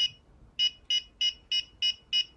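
Handheld EMF meter beeping at a steady rate, short high-pitched beeps about three a second after a single beep at the start. The beeping signals an alternating magnetic field picked up at the transformer core, which the speaker calls "real flux."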